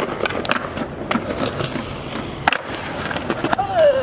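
Skateboard wheels rolling on concrete, with repeated sharp clacks of boards hitting the ground scattered throughout. A voice calls out near the end.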